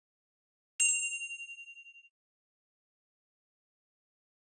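A bright bell ding from a notification-bell sound effect, struck once about a second in and ringing out with a fluttering decay for just over a second.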